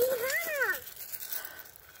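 A toddler's short, high whining cry that rises and then falls away, over in under a second.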